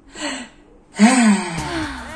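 A person's breathy gasp, followed about a second in by a louder wordless vocal sound that glides up and down in pitch.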